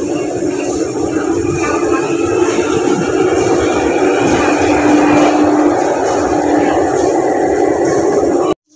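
Hong Kong MTR train running past the platform behind glass screen doors: a steady rumble with an electric hum, growing loudest about five seconds in.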